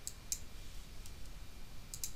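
Several faint, sharp computer mouse and keyboard clicks, with a double click about a third of a second in, as a command is pasted into a terminal and the Enter key is pressed.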